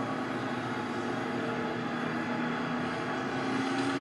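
Steady drone of engines from the race's accompanying vehicles in the background of a live cycling broadcast, heard through a television speaker.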